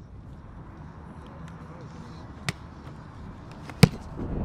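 An American football punted: one sharp, loud smack of the foot striking the ball near the end, with a fainter click about a second before it.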